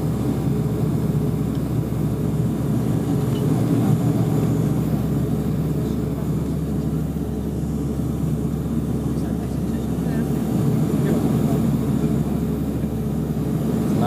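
Cabin noise of a De Havilland Canada Dash 8 twin turboprop on final approach, heard from inside the passenger cabin: a steady, even drone of the engines and propellers.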